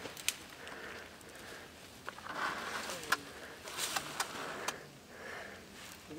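Soft rustling of dry scrub and clothing, with several sharp clicks and snaps: people moving about in brush.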